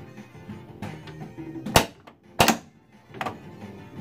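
The Addams Family pinball machine playing its game music, with three sharp mechanical knocks from the playfield, about a second apart, the first two loudest.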